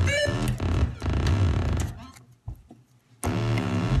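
Buzzy electronic synthesizer tones coming through a phone line, played as fake bad-connection noise. They come in two stretches with a near-quiet gap of about a second between them.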